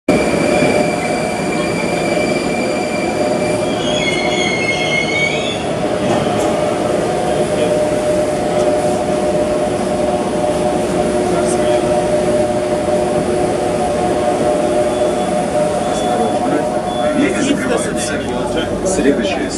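Metro train noise: a steady loud rumble with several held tones, and a high squeal that wavers in pitch about four to six seconds in.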